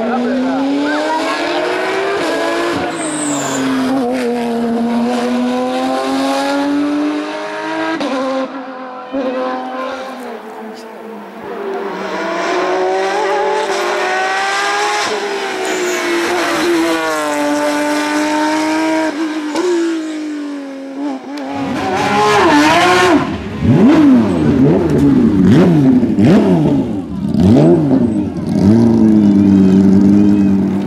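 Porsche 911 race car's flat-six engine accelerating hard up a hillclimb course, its pitch climbing through each gear and dropping at the shifts. Near the end a louder, closer racing engine revs quickly up and down.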